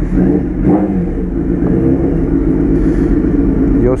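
Suzuki Hayabusa 1300's four-cylinder engine running at low revs through an aftermarket Atalla stainless-steel exhaust tip, with a steady exhaust note as the bike rolls off slowly.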